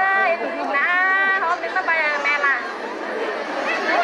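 A young woman singing a Tai folk song in a high voice, in phrases of long, wavering held notes with short breaks between.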